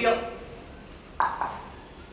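Two quick knocks about a quarter of a second apart, a storyteller's sound effect for knocking at a door.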